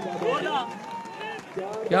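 Men's voices talking and calling out over one another, with a louder shout of "yeah" near the end.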